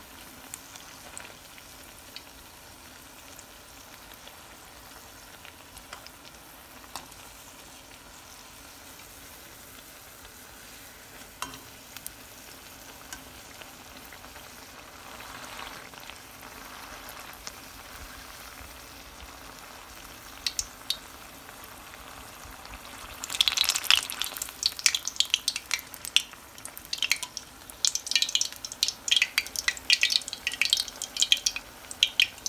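Pumpkin-flower fritter frying in hot oil in a wok, a steady low sizzle with a few light clicks from a metal slotted spoon. About three-quarters of the way through, the oil breaks into loud, dense spattering and crackling that carries on to the end.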